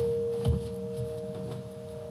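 Two steady pure tones held in a slowly fading track intro. A second, higher tone joins about half a second in with a soft low thump.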